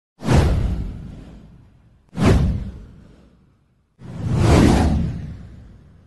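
Three whoosh sound effects from an animated news intro. The first two hit sharply and fade away over about a second and a half. The third swells in more gradually and lasts longer.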